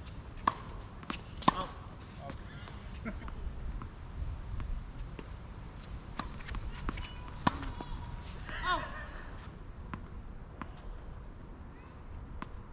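Tennis balls struck by rackets and bouncing on an outdoor hard court during a doubles rally: a series of sharp pops a second or more apart, the loudest about one and a half and seven and a half seconds in.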